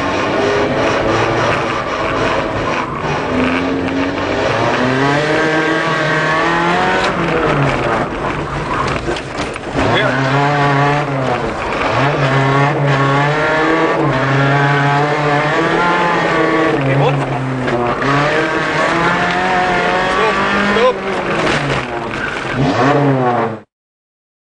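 Rally car engine heard from inside the cabin, revving hard with its pitch climbing and dropping again and again as the car accelerates, shifts and lifts through a tight course. The sound cuts off abruptly near the end.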